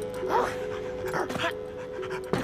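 Cartoon dog giving two short, eager yips about a second apart, over background music with held notes.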